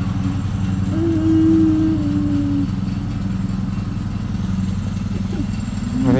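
Gasoline lawn mower engine running steadily, an even low drone. About a second in, a higher held tone sounds for under two seconds, sinking slightly in pitch.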